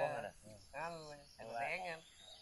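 A person's voice calling out three times in short, rising-and-falling calls, over a faint steady high drone of insects.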